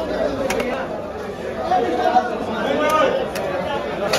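Chatter of many voices in a busy fish market, with a few sharp clicks of a large knife working along the scaly side of a big rohu carp on a wooden block.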